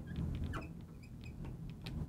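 Felt-tip marker writing on a glass lightboard: short squeaks and light ticks as the tip strokes across the glass.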